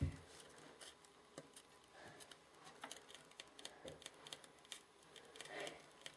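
Homemade putt-putt (pop-pop) toy boat's steam engine popping: a fast, irregular run of faint clicks like popcorn, meaning the engine is working. A thump at the very start.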